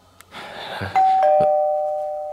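Two-tone doorbell chime: a higher 'ding' about a second in, followed by a lower 'dong', both notes ringing on and slowly fading.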